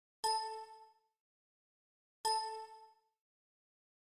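A bell-like chime sound effect sounding twice, two seconds apart, each ding starting sharply and ringing out to nothing within about a second.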